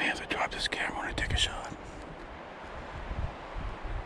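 A man whispering briefly, stopping about two seconds in, over low wind rumble on the microphone.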